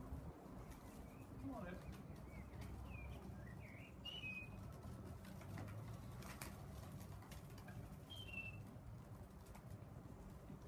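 A few faint, short, high bird chirps and squeaks, a cluster in the first half and another near the end, over a low steady background rumble.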